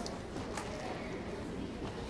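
The hush of a school auditorium before a band starts to play: low steady room rumble with a few small clicks and rustles from the players and audience, three of them spread across the two seconds. No music yet.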